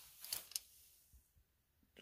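Near silence, with a few faint ticks in the first half second.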